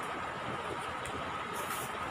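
Steady background noise with a faint constant high hum, and no distinct knocks or clicks.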